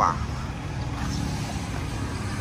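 Kubota ZT140 single-cylinder diesel engine idling steadily with a low, even chugging, on a walking tractor.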